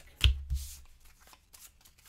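A small deck of Button Shy Death Valley game cards being shuffled by hand: two sharp knocks near the start, then a run of quick, light card flicks toward the end.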